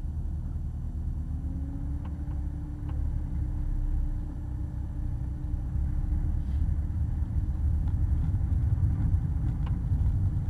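Porsche 911 GT3's flat-six engine heard from inside the cabin, running at low revs as the car pulls away slowly in first gear. A steady low drone with a faint humming tone that rises a little about a second and a half in, then holds, and the level edges up slightly in the second half.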